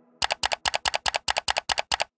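Computer-mouse click sound effect repeated rapidly: about nine quick double clicks at roughly five a second, starting a moment in.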